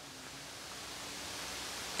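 Faint, steady hiss of room tone in a pause between speech, creeping slightly louder through the pause, with a faint low hum beneath it.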